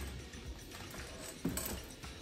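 Handling noise as a speaker on its stand and its large cardboard box are moved: low rustling and clatter, with a couple of short knocks about a second and a half in.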